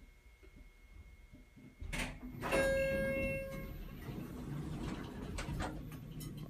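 1986 Westinghouse hydraulic elevator arriving at a floor: a clunk about two seconds in, then a single arrival chime that rings for about a second, and the car and hallway doors sliding open with the door operator running.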